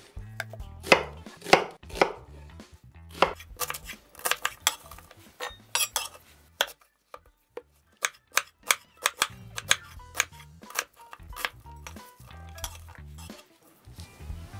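Chef's knife cutting through a whole onion and knocking against a wooden cutting board: a run of sharp, irregular knocks with short pauses, and a longer pause about seven seconds in.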